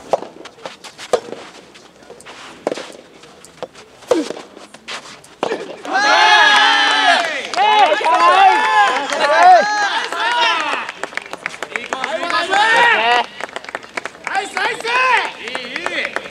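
Soft tennis rally: a rubber ball struck by rackets four times, a second or so apart. From about six seconds in come loud shouts and cheers from players and teammates as the point ends.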